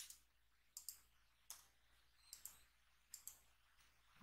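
Faint computer keyboard keystrokes: about eight scattered clicks at an irregular pace, some in quick pairs, over a faint steady low hum.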